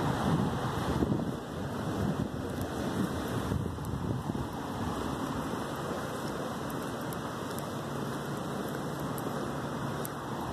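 Wind rushing and buffeting on a phone microphone, gustier in the first second or so and then steady.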